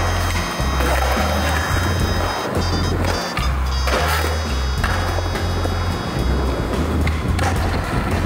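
Skateboard wheels rolling on concrete, with a few sharp clacks of the board, under background music with a steady bass line and sustained high electronic tones.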